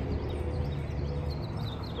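Small birds chirping with short, quick calls, mostly in the second half, over a steady low rumble.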